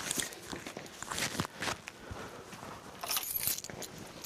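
Small metal items jingling and clicking, with cloth rustling and footsteps, as a woven shoulder bag is slung on and handled; a brighter jingle comes about three seconds in.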